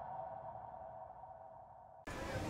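The ringing tail of a logo-intro sound effect: a steady tone dying away after a whoosh, fading out before the cut.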